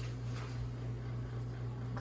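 A steady low hum in a quiet room, with a faint click right at the start and a soft rustle about half a second in from hands working thread through fabric.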